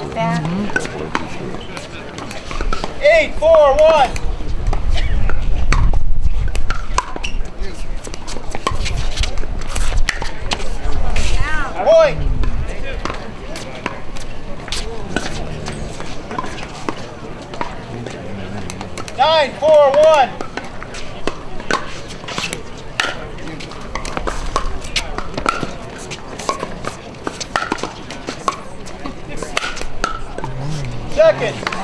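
Pickleball paddles striking a plastic ball: sharp, irregular pocks through the rallies, over the murmur of spectators, with a couple of brief voiced calls about 3 s in and near the two-thirds mark.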